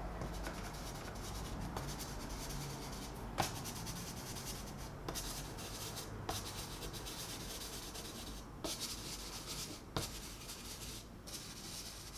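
Black chalk pastel stick scratching and rubbing across pastel paper in repeated short strokes, with a few light knocks of the stick against the paper.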